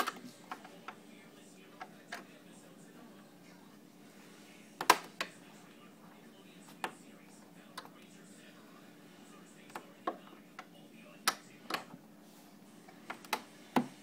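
Irregular sharp clicks and knocks, a dozen or so, the loudest about five seconds in, from hands and a tool working at the table's underside and its metal corner bracket.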